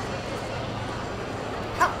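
Indoor sports-hall din, then near the end a single short, sharp shout: a martial artist's kiai.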